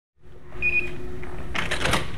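A door lock being worked with keys: keys and latch click and rattle for the last half second, after a short electronic beep near the start, over a steady room hum.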